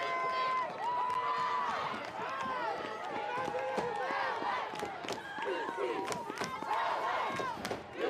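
Crowd of spectators and players in a stadium, many voices shouting and calling out at once in long drawn-out calls, overlapping into a steady hubbub.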